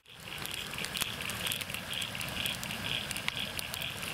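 Large wood campfire burning, crackling with many sharp snaps and pops over a steady hiss, fading in at the start. A faint high chirp pulses about three times a second behind it.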